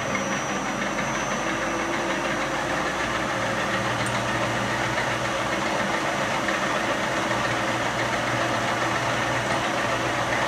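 Republic Lagun 16-inch gear-head lathe running with its chuck spinning: a steady mechanical whir with a low hum that grows stronger about three seconds in.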